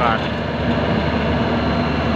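Yanmar YH850 combine harvester's diesel engine running steadily and loudly under way as the tracked machine crawls over an iron bridge.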